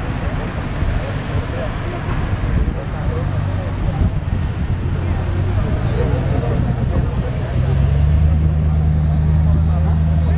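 A vehicle engine running, stepping up in pitch and getting louder about eight seconds in, with voices talking in the background.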